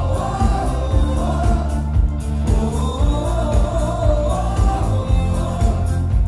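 Live band playing amplified dance music with a steady beat, heavy bass and drums, while a man and a woman sing into microphones.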